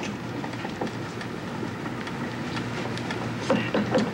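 Faint spoon clicks from stirring borscht in a glass pot, over a steady hiss and low hum.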